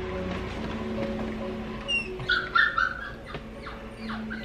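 Cockapoo puppy crying at being left alone to sleep: a brief thin squeak about two seconds in, then several short, high whines over the next second.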